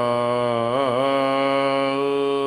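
A man's voice chanting Gurbani, holding one long drawn-out vowel at the end of a line. The pitch wavers briefly about a second in, then holds level.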